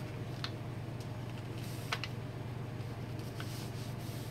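A sheet of printer paper being folded and pressed flat on a table, giving a few faint ticks and rustles, the clearest about two seconds in, over a steady low hum.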